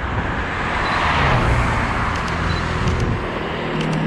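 A road vehicle passing by: tyre and engine noise swells to its loudest about a second in, then slowly fades.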